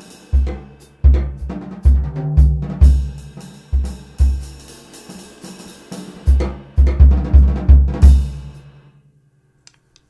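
Jazz drum kit played with sticks in a short solo phrase: heavy bass drum strokes, some in quick runs of three, mixed with snare and tom strokes under cymbal wash. The playing stops about a second before the end and the ring dies away.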